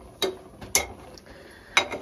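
Two light metal clinks, about a quarter and three quarters of a second in, of a metal ladle against a pressure cooker pot and a steel bowl while greens are stirred in.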